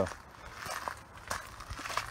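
Footsteps on gravel, a few soft crunches.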